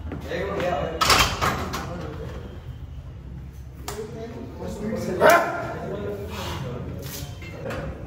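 Men shouting and yelling encouragement around a heavy barbell squat, with loud shouts about a second in and again just past five seconds.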